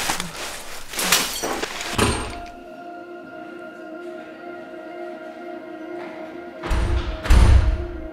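Film soundtrack: a few knocks end in a thud, then a steady ambient music drone of held tones sets in. Near the end, two heavy, deep thuds sound over the drone.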